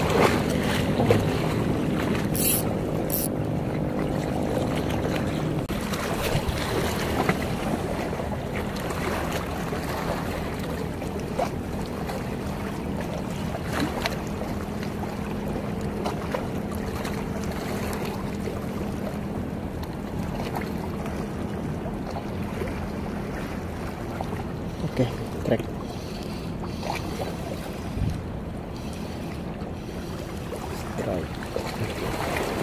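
A boat engine running offshore with a steady hum that fades after about twenty seconds, over waves washing against rocks and wind on the microphone.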